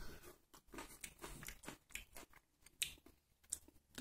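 Faint chewing of a small, partly dried-up wild currant tomato (Solanum pimpinellifolium): a run of soft, irregular little clicks and crunches as the tough-skinned fruit is bitten and chewed.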